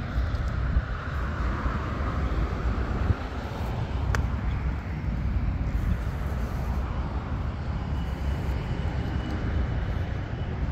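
Wind on the microphone: a steady low rumble, with a single sharp click about four seconds in.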